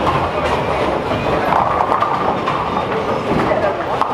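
Bowling-alley din: a steady rumble of bowling balls rolling down the lanes, with scattered sharp clatters of pins being struck, over background chatter.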